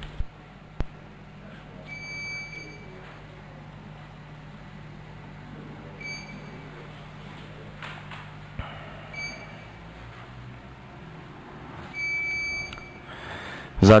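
Electronic beeps from a council chamber's voting system during an open vote: a longer tone about two seconds in, three short beeps in the middle, and another longer tone near the end, over a low room hum.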